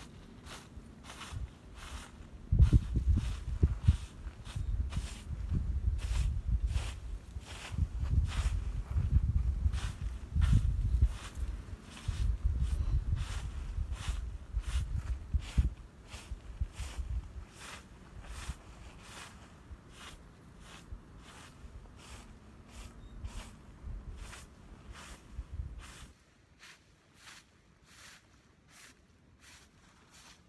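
Broom sweeping dry leaves across landscape fabric in short repeated strokes, about two a second. A loud, uneven low rumble on the microphone runs under the first half and fades in the second.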